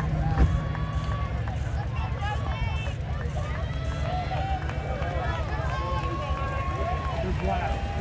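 Footfalls of a large pack of runners on grass, a dense continuous patter as the field passes close by, with spectators' scattered shouts and cheering voices over it.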